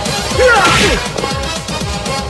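Added fight sound effects: a loud whooshing hit about half a second in, laid over background music.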